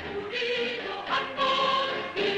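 A mixed choir of men and women singing a Korean song, with held notes.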